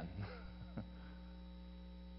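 Steady electrical mains hum at low level, with a brief faint click a little under a second in.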